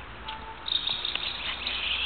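Small birds chirping busily, a dense run of short high calls that starts about two-thirds of a second in.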